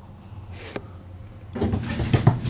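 A low steady room hum. About one and a half seconds in, it gives way to a sudden loud scuffle of clicks and knocks as two dogs play-fight.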